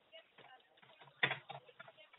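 Faint small clicks and handling noises over a telephone line, with one short, sharper knock about a second in.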